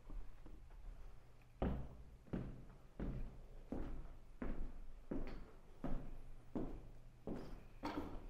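Footsteps on a bare wooden floor, walking at an even pace, roughly one step every 0.7 seconds. The steps begin about a second and a half in.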